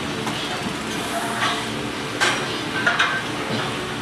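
Busy weight-room background noise: a steady hiss with faint voices, and a couple of short metallic clinks about two and three seconds in.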